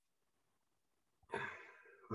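Near silence, then a short breath into the microphone, a sigh-like intake that fades before the next words.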